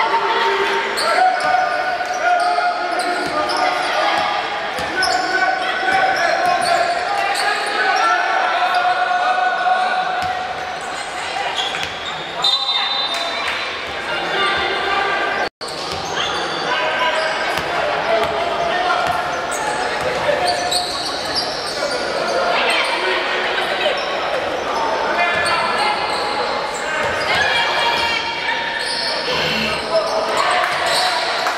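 Live basketball game sound in a large echoing gym: people's voices calling out and chattering, with a basketball bouncing on the hardwood court. The sound cuts out for an instant about halfway through.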